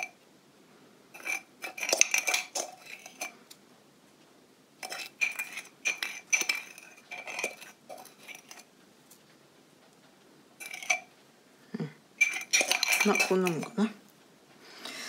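A spoon scraping and clinking against the inside of a glazed ceramic salt pot while coarse salt is scooped out, with light taps as the salt is dropped into a plastic tub. The sound comes in short clusters of clicks with a brief ring, separated by pauses, and is busiest near the end.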